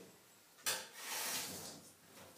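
A sharp knock or clack about two-thirds of a second in, followed by about a second of rustling or scraping that fades away: something handled in a kitchen.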